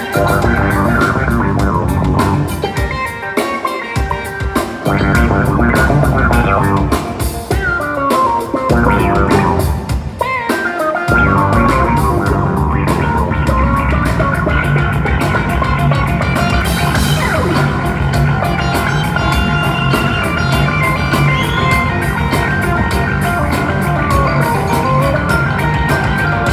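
Live rock band playing amplified music: bass, guitars, keyboards and drums. The bottom end drops away briefly about ten seconds in, then a steady bass line carries on under the band.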